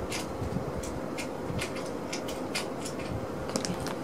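Small plastic bag of metal craft pieces being handled: scattered light crinkles and clicks at irregular intervals over a faint steady hum.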